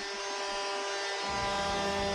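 Arena goal horn sounding one steady buzzing blast, signalling a home-team goal; it grows fuller and lower about a second in.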